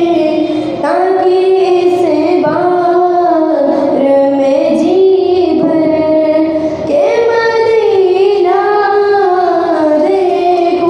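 A girl singing a naat, an Urdu devotional poem, solo into a microphone with no instruments. She draws out long, gliding notes and pauses briefly for breath about a second in and again near seven seconds.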